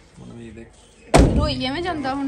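A car door slammed shut once, about a second in, sharp and loud, followed at once by a person's voice.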